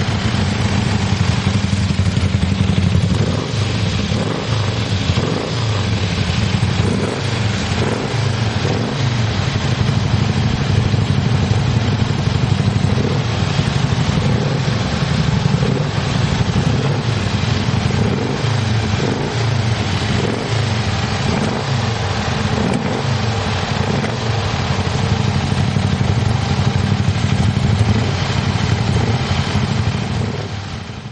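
A motorcycle engine running continuously, its pitch wavering up and down.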